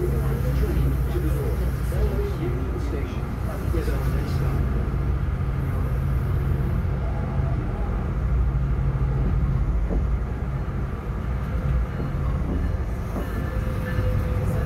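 Steady low rumble and hum of a Metrolink commuter train running along the tracks, heard from inside the passenger car.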